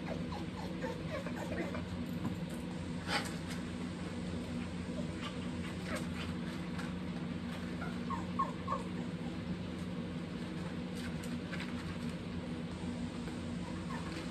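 A dog eating dry kibble from paper plates, with scattered crunches and clicks over a steady low hum.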